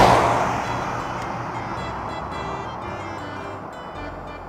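Car sound effect: a rushing noise that peaks right at the start and fades away over the next few seconds, over background music.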